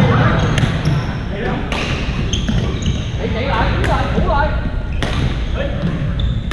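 Badminton rackets striking shuttlecocks in a reverberant sports hall: sharp hits at irregular intervals from several courts, with short squeaks of court shoes on the floor. A murmur of players' voices runs underneath.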